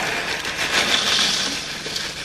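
Plastic cereal-bag liner crinkling as it is handled, loudest about a second in.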